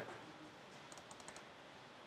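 Near silence with a short run of faint clicks from a laptop about halfway through.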